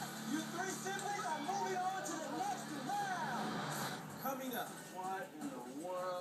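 Television game-show soundtrack: background music with people's voices over it, with no clear words, heard from the TV's speakers in the room.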